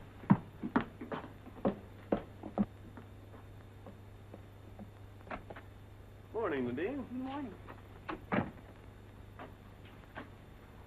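Footsteps on a wooden floor, about two or three a second, for the first few seconds. About six seconds in, a door creaks open for a little over a second, then two knocks as it shuts, the second the louder.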